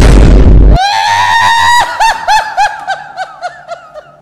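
Comic sound effect: a loud burst of noise lasting under a second, then a high-pitched cry held for about a second that breaks into a run of short wavering pulses, about four a second, fading toward the end.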